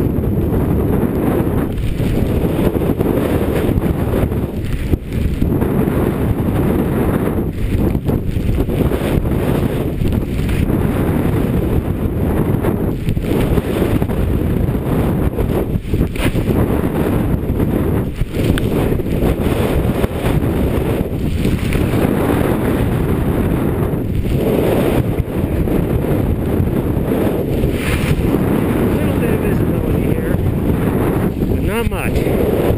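Strong wind buffeting the camera's microphone during a mountain white-out: a loud, low rumble that gusts and dips a little every second or two.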